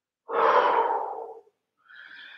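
A woman breathing out hard with effort for about a second, then a shorter, fainter breath near the end: heavy breathing from exertion in the middle of a dumbbell exercise.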